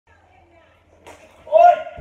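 A sudden sharp hit with a short, high yelp about one and a half seconds in, after a quiet start.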